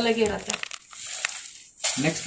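Folded saree fabric rustling and crinkling as it is handled and set on the counter, after a word of speech in the first half second.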